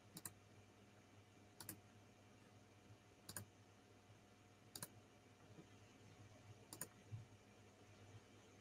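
Faint computer mouse clicks, about six spread through the stretch, some in quick pairs, against a faint steady hum of room tone.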